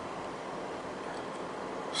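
Steady hum and hiss of a 2013 Chevrolet Camaro idling with its air conditioning running and the A/C compressor engaged.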